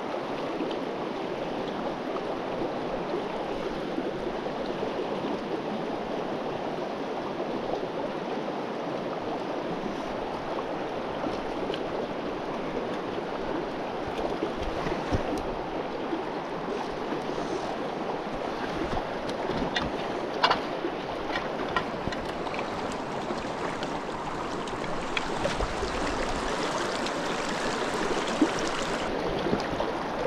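A rocky mountain river rushing steadily over stones, heard close up. A few short clicks and taps sound over the water in the middle and later part.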